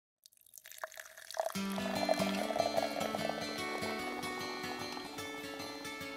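Liquid pouring, then instrumental intro music that starts about a second and a half in and carries on, the pouring continuing faintly under the first few seconds of it.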